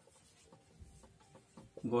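Marker pen writing on a whiteboard: faint, short scratching strokes as letters are drawn.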